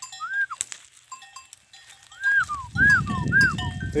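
Bells on a herd of small livestock clanking as the animals move. From about two seconds in there is trampling hoof noise, and several short, high arched calls come over it.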